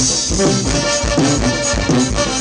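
Live Mexican banda music: a band playing with brass over a steady, regular beat.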